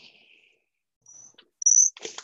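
Two short, high-pitched chirps on one steady pitch: a faint one about a second in and a much louder one near the end. A soft hiss fades out at the start.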